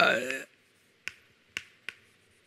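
Chalk tapping against a blackboard as letters are written, three sharp short clicks about half a second apart in the second half.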